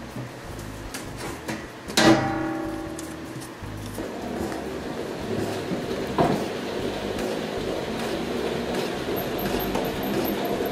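Stainless steel hand-crank honey extractor: a metal clank about two seconds in that rings on briefly like a struck drum, a smaller knock a few seconds later, then a steady whirring rattle that builds as the crank is turned and the frame basket spins.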